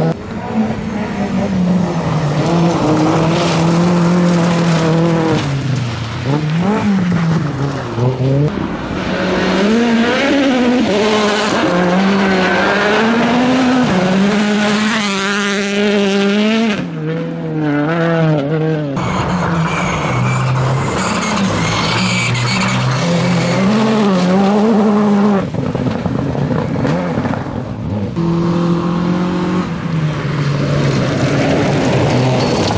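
Rally cars driven hard on a loose gravel stage, one after another, their engines revving up and falling back again and again through the gears. The tyres scrabble on the gravel. The sound changes abruptly a few times where one car gives way to the next.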